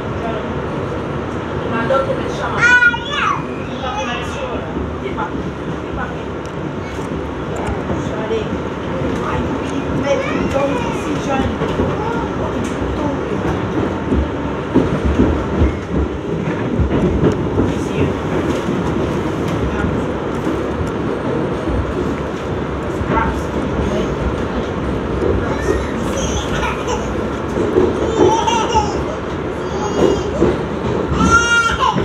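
New York City Transit R62A subway car running through a tunnel at speed, with a steady running noise from wheels on rail.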